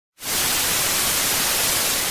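Analogue television static: a steady, even hiss of white noise that starts a moment in.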